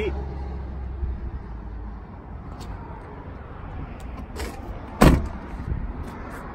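Pickup truck door shut with one loud slam about five seconds in, after a few light clicks and handling noises of someone climbing out of the cab.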